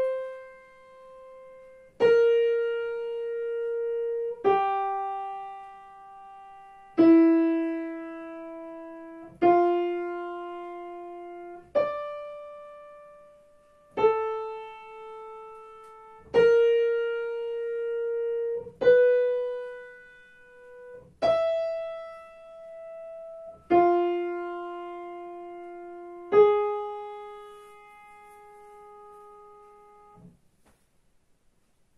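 Piano playing a slow melodic dictation in F major for ear training: twelve single notes, one at a time, each struck and left to ring for about two and a half seconds before the next.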